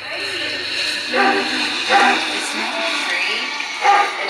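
People talking, with no clear words, over a faint steady low hum that fades out about halfway through.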